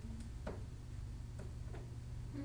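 Classroom room tone: a steady low hum with a few faint, irregular clicks.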